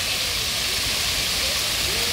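Dozens of water jets of a splash-pad fountain spraying and falling onto wet pavement: a steady, even hiss of rushing water.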